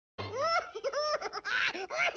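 A person laughing in high-pitched, rising-and-falling whoops.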